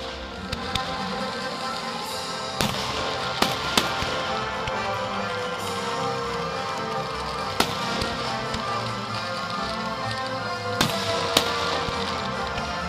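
Fireworks display: about eight sharp bangs and cracks from bursting shells, scattered irregularly, heard over continuous music.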